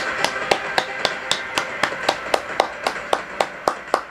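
One person clapping their hands in a steady rhythm, about four claps a second.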